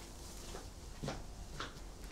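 A few soft footsteps of a woman in low-heeled shoes walking away across an office floor, over faint room tone.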